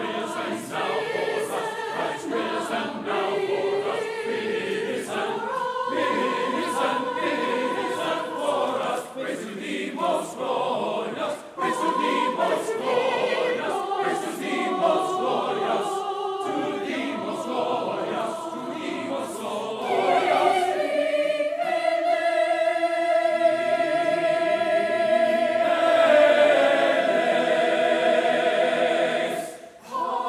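Mixed church choir of men's and women's voices singing an Easter anthem. About twenty seconds in the choir swells onto a long held chord, and it breaks off briefly just before the end.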